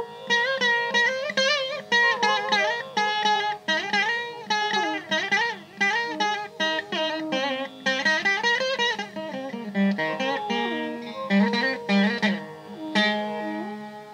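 Carnatic classical music played back for a dance: a plucked string instrument plays a quick melody with sliding bends between notes, over a steady drone.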